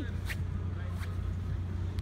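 Steady low rumble of outdoor background noise, with a couple of faint short rustles.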